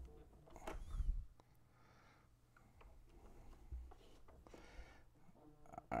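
Faint handling noises in a quiet room: a couple of soft low bumps and light rustling, as a phone is picked up and handled.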